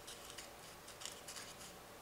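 Scissors snipping small tabs into the edge of a glitter craft-foam half-sphere: a series of faint, short snips.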